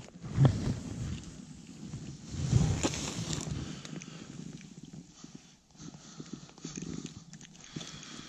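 Close handling noise of a just-caught bluegill being taken in hand: rustling of glove and jacket against the microphone, with a few irregular knocks.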